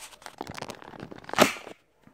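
Handling noise of a phone being picked up and carried by hand: scattered clicks and rustling against its microphone, with a louder rustle about one and a half seconds in, and the sound cutting out briefly near the end.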